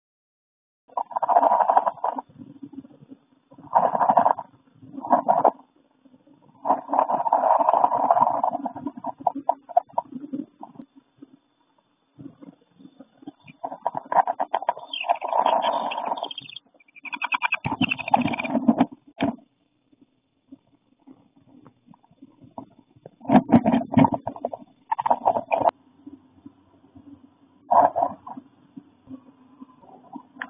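Muffled rustling and scrabbling of a wren moving about on its twig nest, heard from inside the nest box in irregular bursts of one to two seconds with short quiet gaps.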